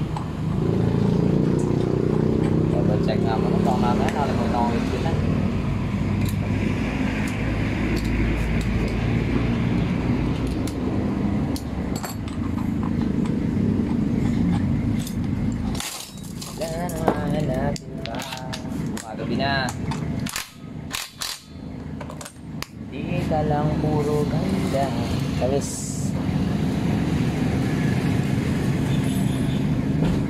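A motorcycle engine running steadily, with faint voices over it. About halfway through the engine sound drops away for several seconds, and a run of sharp clicks and knocks sounds.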